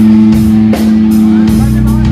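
Live rock band playing: a held, distorted low note on electric guitar and bass runs under a drum kit hitting regular beats with cymbal crashes.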